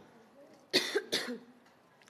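A person coughing twice in quick succession, about three-quarters of a second in.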